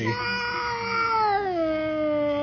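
Domestic cat giving one long drawn-out meow that slides slowly down in pitch about halfway through.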